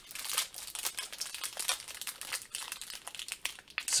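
Thin clear plastic wrapper on a stack of trading cards crinkling and crackling in a dense run of small crackles as fingers pinch and peel it open.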